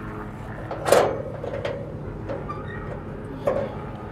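Hinged steel access door on the side of a Komatsu hybrid excavator clunking as it is opened, with one sharp knock about a second in and a lighter knock near the end.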